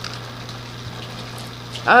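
A steady low hum and faint hiss of room background during a pause in talk, then a person's voice starts with 'oh' near the end.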